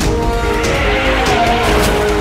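Car tyres screeching under hard braking, a hiss that fades out about a second and a half in, over dramatic background music with sustained notes.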